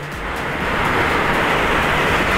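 Yamaha MT-series motorcycle under way, heard from the rider's onboard camera: a rush of wind and road noise over a low engine note, growing louder over the first second and then holding steady.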